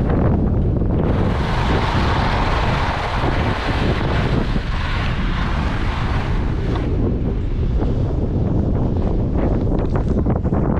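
Wind buffeting an action camera's microphone while skis hiss and scrape over packed snow. The snow hiss drops away about seven seconds in as the skier slows to a stop, and a few handling knocks come near the end as a gloved hand reaches to the camera.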